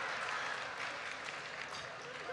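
Large audience applauding after a joke, the clapping tapering off.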